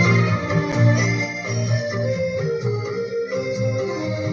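Instrumental music: an organ-like keyboard plays a melody of held notes over low sustained chords, the intro of a song's backing track.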